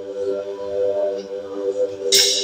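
Mixed choir holding a long sustained chord under a conductor's direction.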